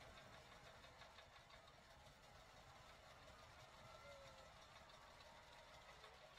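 Near silence, with only a faint, even background murmur.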